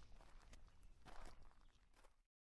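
Near silence, with a faint, brief soft sound about a second in.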